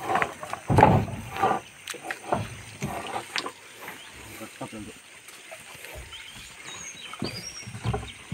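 Men's voices calling out over scattered knocks and bumps of wooden planks as a raft ferry is worked across a river. A few short, high whistling chirps come near the end.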